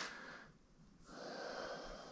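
Faint breathing close to the microphone: a soft exhale after a short near-silent gap about half a second in.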